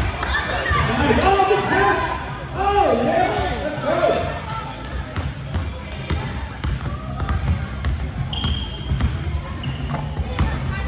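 A basketball being dribbled on a hardwood gym floor, bouncing repeatedly. Voices call out over the bouncing during the first few seconds.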